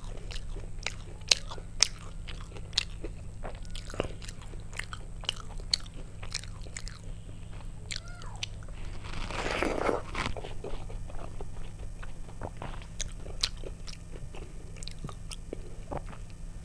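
Close-miked eating sounds: chewing a mouthful of soft rice-and-lentil khichuri, with many sharp wet clicks and lip smacks. A longer, louder wet burst comes a little past halfway. A low steady hum runs underneath.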